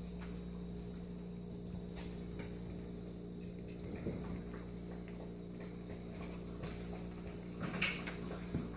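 Puppies eating dry kibble from a metal tray, with soft crunching and scattered small clicks, over a steady low hum. There is a sharper click near the end.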